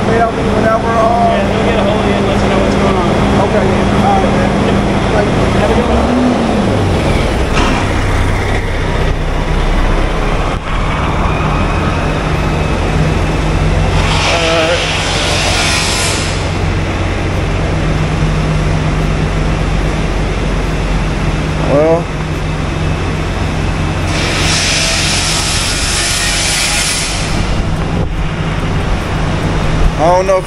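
Truck repair shop noise: a steady low machine hum that shifts in pitch about six seconds in, with two bursts of hissing, each two to three seconds long, about fourteen and twenty-four seconds in.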